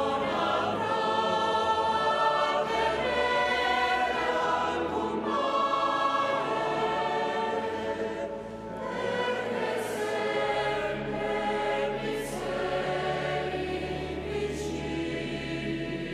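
Choir singing a communion hymn in a cathedral, in long held notes that change chord every second or so.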